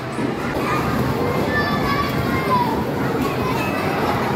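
Children playing and calling out in a busy indoor play area: a steady din of many young voices, with high shouts now and then above it.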